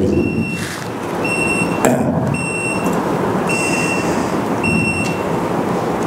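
An electronic beep repeating five times, about once a second, each beep about half a second long, over steady background noise. There is one sharp click about two seconds in.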